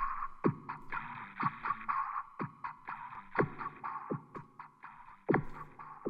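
A synthesized electronic beat: a low, downward-swooping kick about once a second with quicker ticks between, over a buzzing midrange synth tone.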